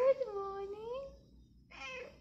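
A tabby cat meowing: one long, drawn-out meow lasting about a second.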